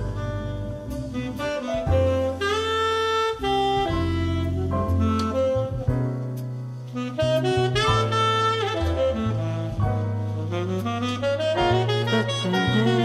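Tenor saxophone playing a melodic jazz solo line, with long held notes that scoop up into pitch, over bass and drums.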